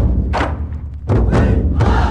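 Music with a heavy, driving drum beat over deep bass; the drums drop out briefly in the middle, then come back in.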